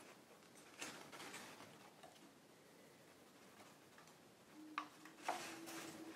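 Faint handling sounds of stiff Stark kraft paper being folded by hand: soft rustling, with a few short crinkles and crackles, the sharpest two near the end.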